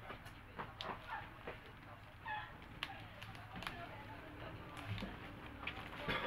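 Faint clicks and crinkles of fingers picking at the seal of a small plastic cosmetic package. A short high-pitched call sounds in the background a little over two seconds in.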